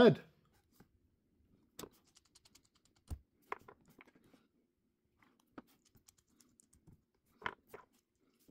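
Scattered small clicks and taps of steel hex bolts and nuts and a plastic threadlocker bottle being handled over a wooden tabletop, with the loudest pair of clicks near the end.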